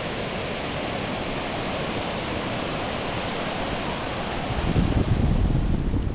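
Ocean surf washing up a sandy beach, a steady hiss, with a louder low rumble coming in about four and a half seconds in.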